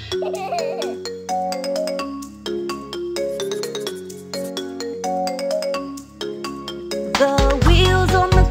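Instrumental intro of a children's song: a bright, bell-like melody over a bass line. A fuller arrangement with drums comes in about seven seconds in.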